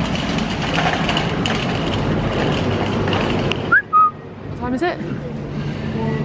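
A wire shopping trolley being wheeled along, its metal basket rattling, for about the first three and a half seconds. About four seconds in comes a short rising high-pitched note, and a voice is heard briefly after it.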